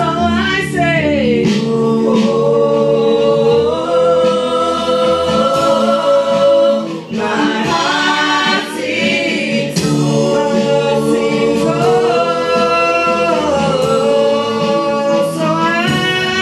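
A group of voices singing a church praise song together, with instrumental accompaniment holding steady low notes under the melody.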